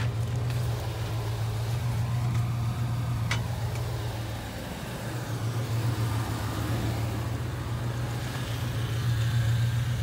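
Steady low drone of an idling motor vehicle engine, dipping briefly about halfway through. A short click comes about three seconds in.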